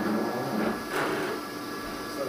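Steady machine hum with several held tones, from the endoscopy equipment, and a brief rushing noise about a second in.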